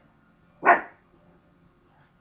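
A single short dog bark, a little over half a second in.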